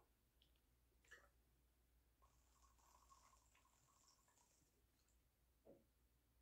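Near silence: room tone, with a couple of faint ticks.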